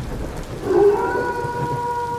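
Spooky thunderstorm sound effect: rain and low thunder rumble, joined about a second in by one long held, howl-like note.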